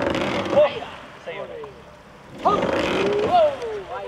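A man's loud shouted calls to a trainera rowing crew, two long drawn-out shouts about two and a half seconds apart, in time with the strokes, over a steady hiss of the boat moving through the water.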